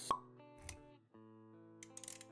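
Intro sound effects over background music: a sharp pop just after the start, a softer low thud a moment later, then sustained music notes after a short dip, with a few clicks near the end.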